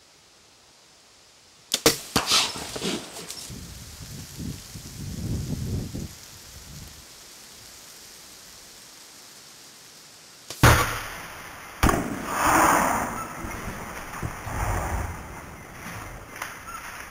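A compound bow shot: a sharp snap of the string on release, with quick cracks after it, then a few seconds of crashing through brush as the arrowed black bear runs off. About ten and a half seconds in there is a second sharp snap, followed by more crashing.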